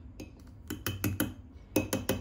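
Metal measuring spoon clinking against a ceramic mug, about eight short, sharp clinks at irregular intervals, as a scoop of coconut butter goes into the coffee.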